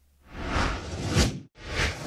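Two whoosh transition sound effects: a noisy swell that builds for about a second and cuts off suddenly, then a second, shorter whoosh right after.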